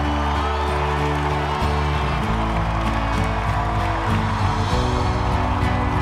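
Music: sustained low chords that change a few times.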